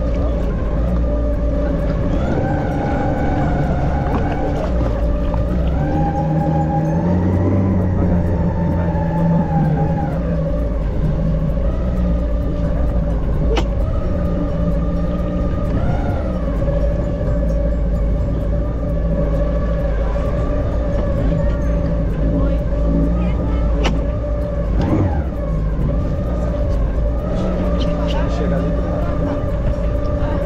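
Jet ski engine running at a slow cruise on the water, its pitch rising and falling a few times early on and then holding steady. Two sharp clicks come through partway along.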